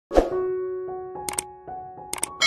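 Subscribe-button animation sound effect: a sharp pop, then held chime-like notes stepping upward, with two quick clicks a little past halfway.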